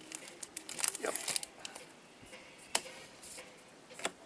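Baseball trading cards being handled on a table: slid, flipped and dropped onto piles. There is a quick run of light flicks and slaps about a second in, and a single sharp snap of a card near three seconds.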